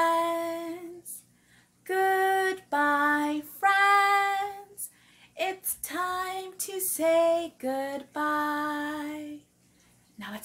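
A woman singing a children's goodbye song without accompaniment, in short phrases of long held notes with brief pauses between them.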